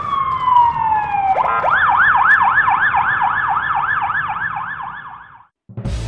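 Electronic emergency-vehicle siren: a long falling wail, then a fast warbling yelp of about four cycles a second that cuts off suddenly near the end.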